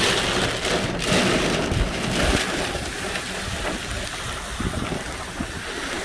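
Heavy storm rain and wind, heard from inside a moving car: a loud, steady rushing of rain on the car body and windscreen mixed with tyres on the wet road, easing slightly after about three seconds.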